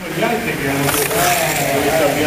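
People talking, with the electric motors of slot cars running on the track underneath.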